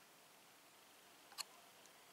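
Near silence, broken about one and a half seconds in by a quick pair of small clicks from the air rifle scope's adjustment turret being turned with a screwdriver.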